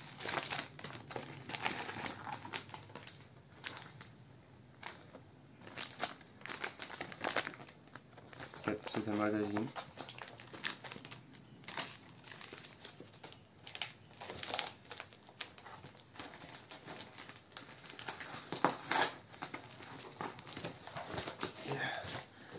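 Paper wrapping being pulled off and crumpled by hand, an irregular crinkling and rustling. A short voice sound comes about nine seconds in.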